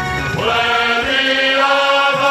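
Male vocal group singing a gospel worship song together, holding long notes.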